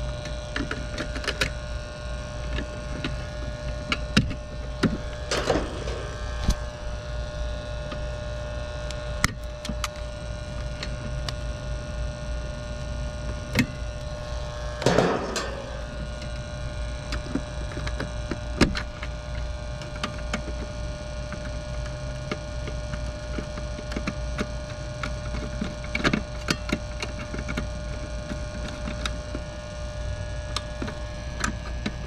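A steady electrical hum runs under scattered clicks and taps as a screwdriver and wires are handled in a metal electrical disconnect box. Two brief falling squeaks come about five seconds in and near the middle.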